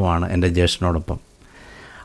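A man speaking in Malayalam, his voice stopping a little over a second in.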